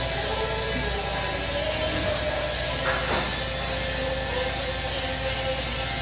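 Background music with steady sustained notes.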